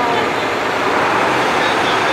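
Steam locomotive venting steam at its front end: a loud, steady hiss.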